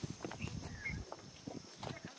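Faint footsteps and scuffs on bare dirt ground, a few irregular soft steps.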